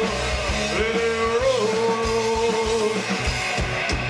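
Rock band playing live in an instrumental break: an electric lead guitar holds long notes with bends over bass and drums.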